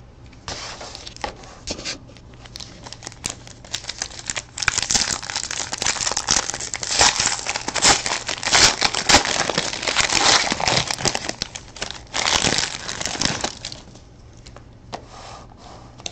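Wrapper of a pack of hockey trading cards being torn open and crumpled by hand. A few handling clicks come first, then dense crinkling from about four seconds in until near the end.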